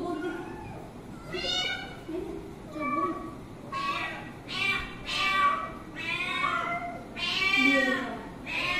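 A cat meowing repeatedly: about seven high-pitched meows, coming closer together and louder from about halfway through.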